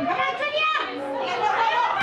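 Several voices talking and calling out over one another in a loud, continuous chatter, with no single clear speaker.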